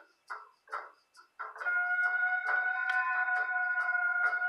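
Music with a quick, steady beat; sustained chord notes come in about a second and a half in and hold.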